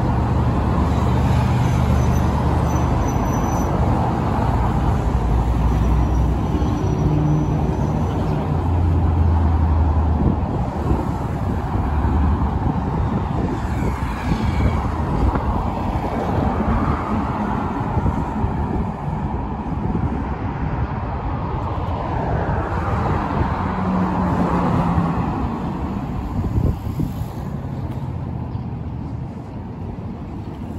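Steady road traffic on a wide city road: cars and a bus passing, with engine hum and tyre noise, easing off a little near the end.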